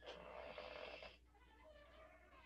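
Faint scratchy scrape of a marker drawn along the edge of a wooden ruler on a whiteboard, lasting about a second.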